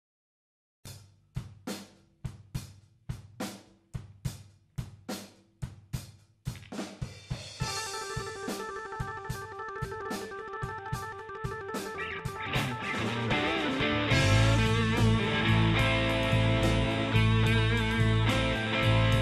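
A live blues-rock band starting a song: a drum kit plays alone at first, with evenly spaced hits about two a second. The drumming fills out, sustained chords come in, and from about fourteen seconds bass and electric guitar join and the full band plays louder.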